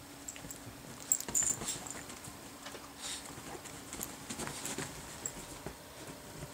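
A dog and a cat playfighting on bedding: scuffling and rustling of paws and fur against the covers, with scattered light clicks and knocks and a busier flurry about a second in.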